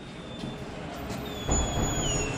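A workshop door squealing with thin high notes as it is pushed open, the squeal gliding down near the end. About a second and a half in, the noise of the workshop beyond comes up louder as the door opens.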